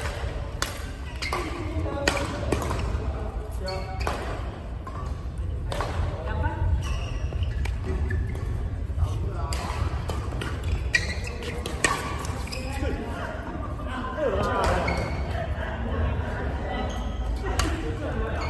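Badminton rally: shuttlecocks struck by rackets in sharp cracks at irregular intervals, with short squeaks of shoes on the court floor. Voices and a steady low hum fill the large, echoing sports hall behind them.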